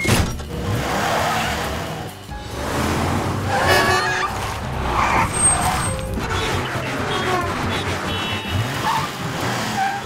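Cartoon car sound effects: a car engine revving up sharply as it accelerates hard, then running on amid traffic noise, with background music.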